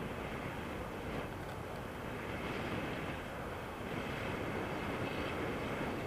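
Steady rush of airflow buffeting the camera's microphone in tandem paraglider flight.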